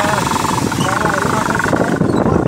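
Motorcycle engine running while being ridden, with wind rushing over the microphone; the wind hiss drops away near the end.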